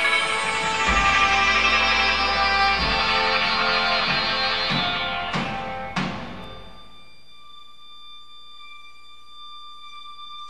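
Live ensemble music: a dense, sustained chord with low drum hits under it, then sharp strikes about five and six seconds in, after which the music dies away to a few faint held high tones.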